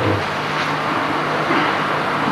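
Steady hiss with a low continuous hum, and no speech: the background noise of an old videotape recording in a pause between speakers.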